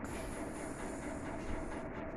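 Steady mechanical background noise with a faint hum, even throughout, with no voices.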